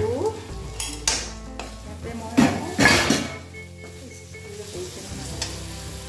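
Onion, chilli and spices sizzling in oil in an aluminium kadai while a steel ladle stirs and scrapes the pan. The loudest scrapes come about two and a half to three seconds in.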